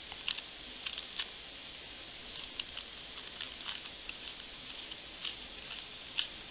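Plastic 2x2 Rubik's cube being turned by hand: faint, irregular clicks as the layers are twisted, over a steady low hiss.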